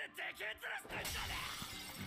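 Anime soundtrack: a character's shouted line, then about a second in a sudden crash of shattering debris, a fight-scene sound effect over background music.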